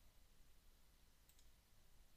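Near silence: room tone, with a couple of faint computer-mouse clicks as a drop-down menu option is chosen.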